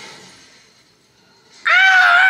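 A young woman lets out a loud, long scream of excitement at a single held pitch, starting about one and a half seconds in after a brief lull.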